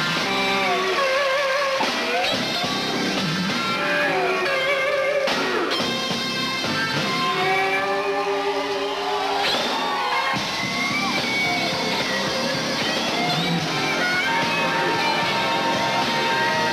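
Live slow blues with a lead electric guitar soloing over the band, its notes bending up and down, then settling into one long held note near the end.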